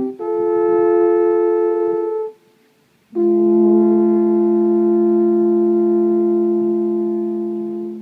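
Two alphorns playing a duet in two-part harmony. A held chord of about two seconds, a short breath, then a long chord of about five seconds that fades away near the end.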